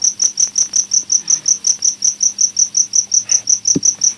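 Rapid, steady high-pitched chirping, about seven chirps a second, typical of a cricket. There is a soft click near the end.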